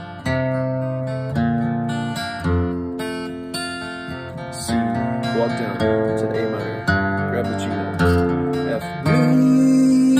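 Acoustic guitar, tuned down a whole step, playing a slow chord progression: a new chord is struck about once a second and left to ring.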